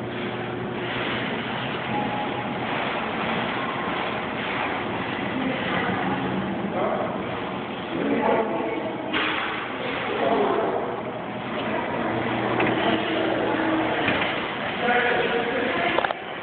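Indistinct background voices over the steady noise of a busy store, with a faint low hum.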